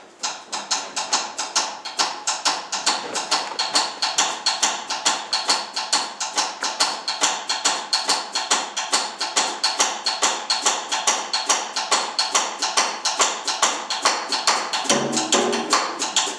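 Jazz drummer starting a piece alone on the kit with a fast, even pattern of high, clicking strokes, about five a second. Low pitched notes join about fifteen seconds in.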